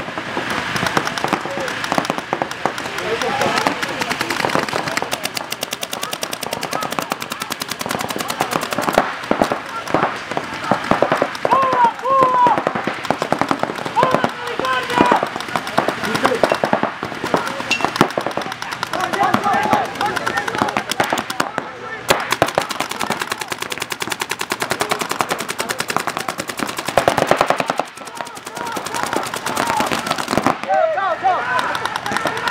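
Several paintball markers firing in rapid strings, many shots a second, with shots overlapping throughout.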